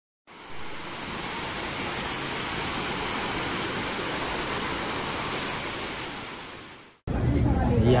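A steady rushing noise with a strong high hiss, fading out about seven seconds in.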